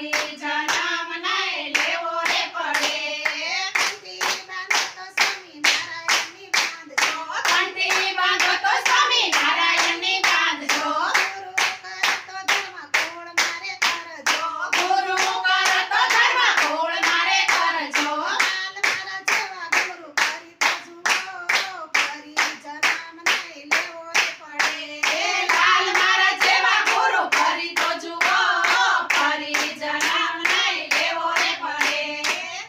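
A group of women singing a Gujarati devotional kirtan together, clapping their hands in a steady beat of about two claps a second.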